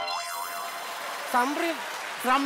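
Comedy sound-effect sting: a springy boing that starts abruptly and rings on as an even hiss for about a second and a half, with a brief voice near the end.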